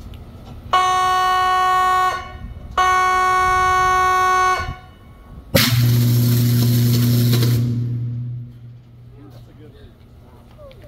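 Two long warning-horn blasts, then a sudden high-current electrical arc flash: a loud burst of hissing noise over a deep electrical buzz that lasts about two seconds and then dies away.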